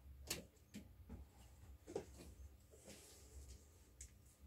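Near silence over a low steady hum, with several faint, short clicks and taps spread unevenly, the clearest about a third of a second and two seconds in.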